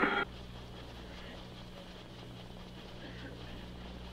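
The crackly air-to-ground radio transmission cuts off just after the start, leaving a faint steady low hum with light hiss: the background noise of the record in a silent stretch between transmissions.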